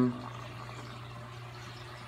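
Steady trickle and rush of water with a constant low hum from a running saltwater reef aquarium's circulation and sump.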